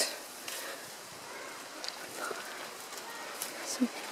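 Tall dry grass rustling and crackling with footsteps as hikers push along a narrow trail through it.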